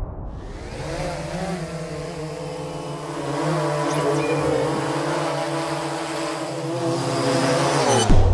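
Quadcopter drone's motors and propellers humming steadily, the pitch wavering slightly, fading in over the first second and cutting off abruptly at the end.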